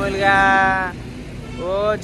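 A man's voice holding one drawn-out vowel sound for just under a second, then talk starting again near the end, over a low, steady background rumble.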